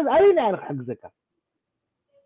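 A man speaking over an online video call for about a second, the voice thin and cut off above the upper mid-range, then dead silence.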